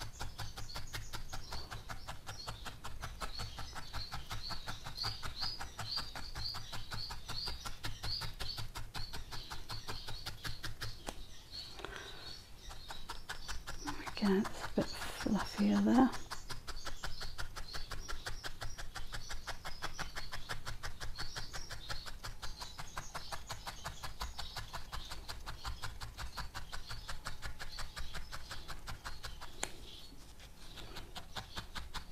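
Felting needle stabbing repeatedly into a wool body held on a felting pad, in soft regular punches a few times a second with a short pause about eleven seconds in. The stabbing firms and shrinks the wool.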